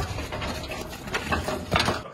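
Rattle and clatter of a sheet-metal gate as people are pushed through it, with a couple of sharp knocks near the end and scuffling noise throughout.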